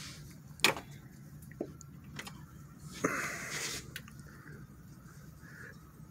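Raw spare ribs being turned over by hand in a metal roasting pan: soft wet handling sounds with a few light knocks, the sharpest about half a second in, and a short rustle a little after three seconds.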